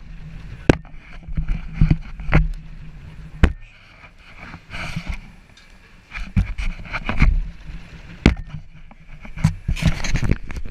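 Wind rumbling and buffeting over a frisbee-mounted GoPro as it spins through the air, broken by several sharp knocks as the disc is caught and handled.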